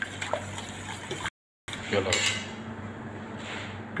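A whisk swishing through liquid chocolate ganache in a large stainless steel pot, with light clinks of metal on metal; the sound breaks off abruptly a little over a second in.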